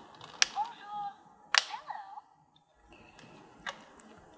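Little Tikes Discover Sounds toy smartphone: its language switch clicks twice, about a second apart, and each click is followed by a short recorded voice greeting from the toy.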